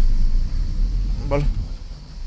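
Low rumble of a car's engine and tyres heard inside the cabin while driving slowly, dying down near the end.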